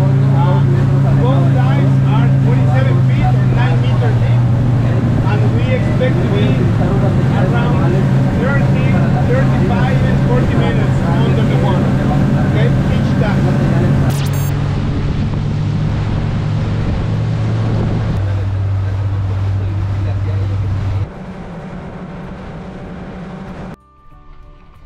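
A motorboat's engine running with a steady low hum under a man's talking. The hum steps down a few times in the second half and drops in level near the end, when the talking has stopped.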